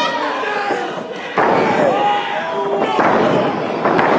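Wrestling crowd shouting over a ring, with sudden heavy thuds of bodies slamming onto the ring mat, one about a second and a half in and another near the end.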